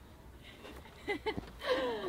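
Quiet pause with a few faint, brief snatches of voices about a second in and a faint falling vocal sound near the end.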